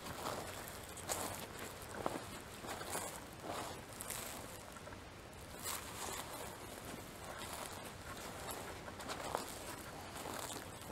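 Footsteps walking slowly over dry grass, soft crunching steps roughly once a second over a faint hiss.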